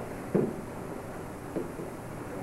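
A single sudden thump about a third of a second in, from body or cane contact in a two-person cane self-defence drill, followed by a fainter knock.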